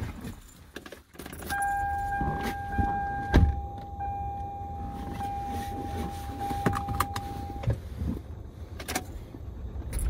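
Car keys jangling inside a car cabin, with clicks and knocks. A steady high electronic warning tone from the car sounds for about six seconds and then stops.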